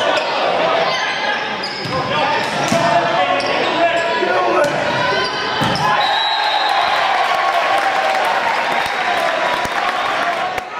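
Volleyball rally in a gymnasium: the ball struck and hitting the floor in sharp knocks, with players and spectators shouting throughout, all echoing in the hall.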